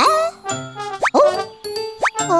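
Playful cartoon music: short held notes broken by quick upward-sweeping 'bloop' sound effects, one at the start, another about a second in and a third at the end.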